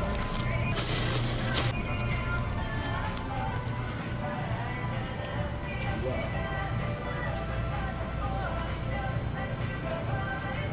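Background music and indistinct voices inside a small grocery store, over a steady low hum. A brief rustle comes about a second in.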